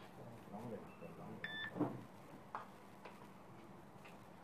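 Faint murmur of voices in a small room, with a short electronic beep about one and a half seconds in and a fainter brief beep just before it.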